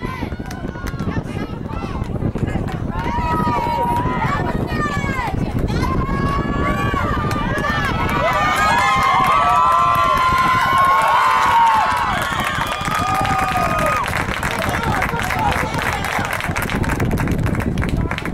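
Spectators shouting and cheering, many excited voices yelling at once, growing loudest about halfway through and easing off near the end.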